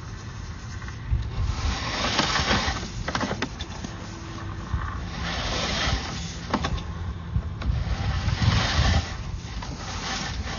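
Sewer inspection camera's push-rod cable being pulled back out of a drain line, scraping and rubbing along the pipe with a few sharp clicks and knocks.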